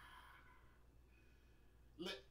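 The end of a man's sigh, an exhaled breath fading out in the first half second, then near silence with room tone.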